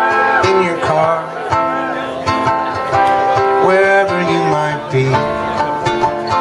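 Acoustic guitar played live, a picked instrumental passage of single notes and chords that ring on between attacks.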